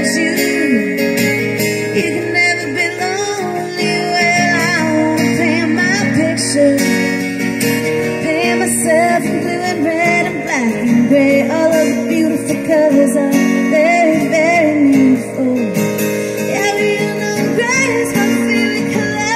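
A woman sings lead over a steadily strummed Martin X Series acoustic guitar, amplified through its pickup.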